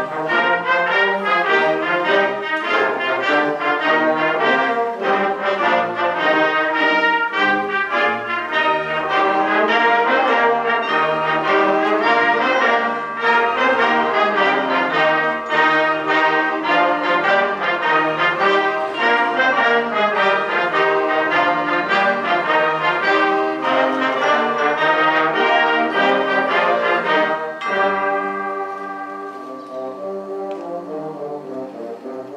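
High school concert band playing, the brass to the fore over woodwinds and drums. Near the end the music drops to a softer passage of held notes.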